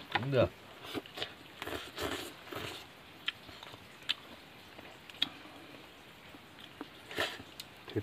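People eating with chopsticks: short noisy slurps and chewing, with scattered light clicks and a brief voiced sound near the start.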